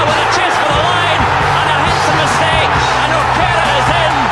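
Stadium crowd cheering loudly as a try is scored, over a backing music track with a steady bass.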